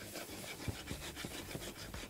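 Wooden spatula scraping and stirring flour through onion and garlic in oil in a hot frying pan, a quick, irregular run of short scraping strokes as the roux for a white sauce comes together.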